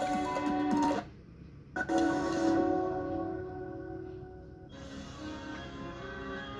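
Television channel intro music playing through a TV's speakers. It breaks off about a second in and comes back with a sharp hit and a held chord, then fades, and fuller music comes in near the end.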